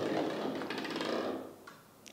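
Hollow plastic toy bowling ball rolling along a wooden tabletop, a steady rolling noise that fades out about a second and a half in; no pins are knocked down.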